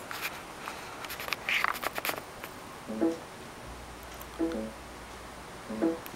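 Clicks and rustling of an iPod touch being handled with its buttons held down, then three short musical notes about a second and a half apart.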